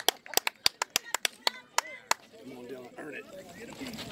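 One person clapping quickly, about seven claps a second, stopping about two seconds in; faint voices follow.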